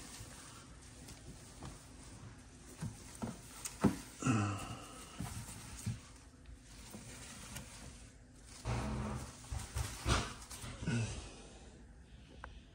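Leafy plant stems rustling and scraping against a plastic container as they are pushed down by hand, with scattered small knocks. A few short low voice sounds come about four seconds in and again near the end.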